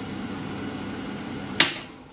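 Schtoff King 600 WH built-in kitchen range hood fan running steadily at its top, third speed, with a low hum under the rush of air. About a second and a half in, a sharp click of its mechanical push-button switch, and the fan noise starts dying away as the motor winds down.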